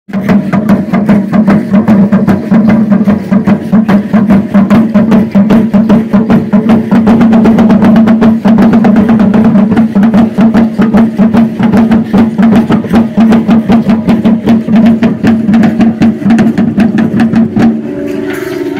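Drumming for Mexica (Aztec) ceremonial dance: a drum beaten in a fast, even rhythm, its deep ring sounding steadily under the strokes. It stops just before the end.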